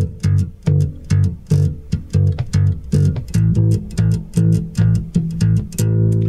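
Four-string electric bass guitar played slap style, repeating notes on the low E string at the 3rd fret, about three notes a second. About three seconds in it moves up to the 5th fret.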